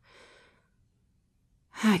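A woman's short, soft breath out, then near silence until she begins to speak near the end.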